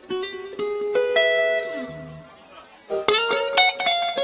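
Electric guitar playing an improvised lead-in. A few single notes ring out and fade, then a quick run of notes comes about three seconds in.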